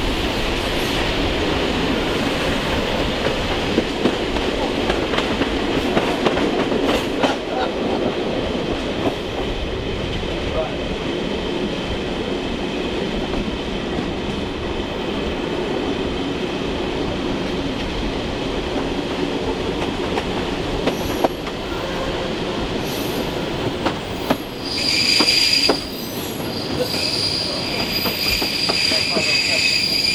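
Locomotive-hauled passenger train running, heard from a coach window: a steady rumble of wheels on rail with scattered clicks. Near the end the wheels squeal with a steady, high-pitched tone that breaks off briefly and returns.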